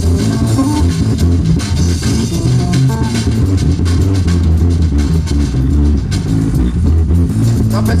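Live band playing an instrumental passage of the song, with bass, guitar and drum kit. A singer comes in just at the end.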